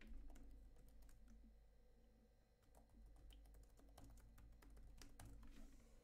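Faint typing on a computer keyboard: a quick run of key clicks, with a short pause about two seconds in before the typing resumes.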